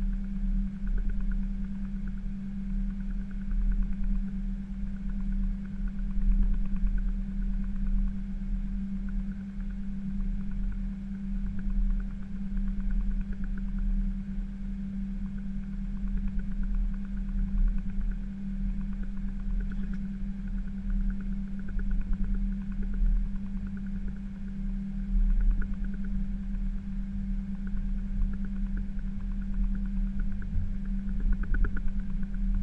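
Steady drone inside an Airbus A320 cockpit as it taxis: a constant low hum with an uneven rumble beneath it.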